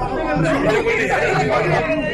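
Crowd chatter: many people talking and calling out over one another at once.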